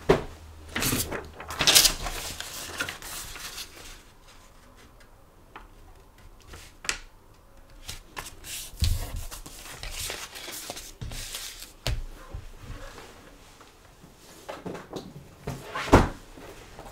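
Paper sheets and card mounts being handled on a desk: rustling, sliding and being laid down in scattered short bursts, with a quieter stretch in the middle.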